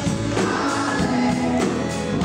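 Live band playing a contemporary gospel-style song, with a female lead vocal and a group of backing singers over electric guitars and drums.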